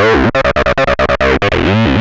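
Distorted acid bassline from an x0xb0x TB-303 clone run through Eventide's CrushStation overdrive/distortion plugin. It is a fast run of short notes whose resonant filter sweeps down and back up as the knobs are turned.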